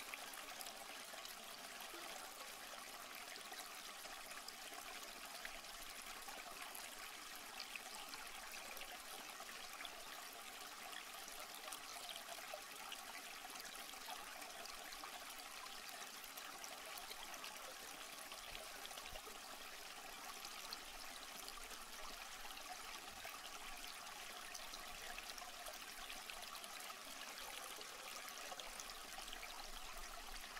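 Faint, steady water-like hiss of an ambient background track, unchanging throughout.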